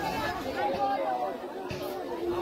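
Several people talking and calling out over one another.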